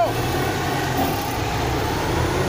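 Road traffic: a steady low engine rumble from motor vehicles on the road.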